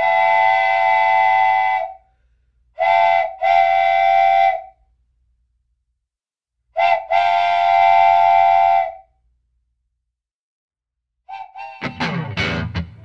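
A chord of steady, whistle-like tones sounding in five blasts, like a train whistle: a long one, two shorter ones close together, then a brief one running straight into another long one, each stopping abruptly. Music comes in near the end.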